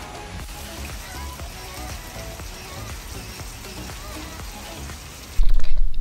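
Steady rain falling on a pool and its surroundings, an even hiss, with faint music under it. About five seconds in it gives way abruptly to a much louder low rumble.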